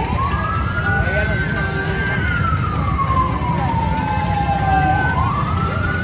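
A siren wailing in slow cycles: it rises quickly, holds its high pitch for about a second, falls slowly over about three seconds, then rises again about five seconds in. A steady low rumble runs underneath.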